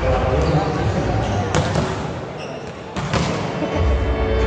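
Murmur of a large crowd in a sports hall, with two sharp volleyball hits from spiking practice, about one and a half and three seconds in.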